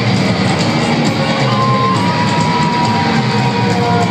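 Loud rock music with a crowd cheering over it, as in a live concert recording, with a long held note about midway through.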